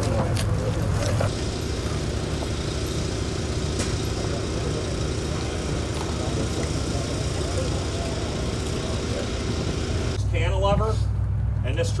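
A large truck engine idling with a steady low rumble and hum, which gives way about ten seconds in when a man starts talking.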